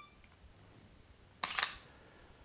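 Camera shutter firing once, about one and a half seconds in: a short double click as the self-timer releases it to take one frame of a focus-stacking series.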